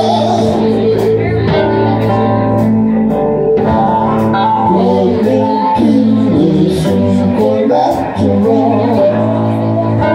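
Live blues-rock band playing: a Strat-style electric guitar over electric keyboard and a drum kit.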